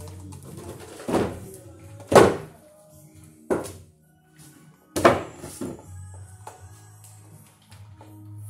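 Background music with five irregularly spaced knocks, each ringing briefly; the loudest comes about two seconds in. The knocks come from hands working on a metal drop-ceiling LED light fixture.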